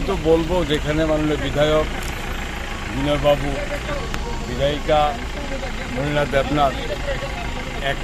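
A man speaking in Bengali without pause, over a steady low engine-like rumble.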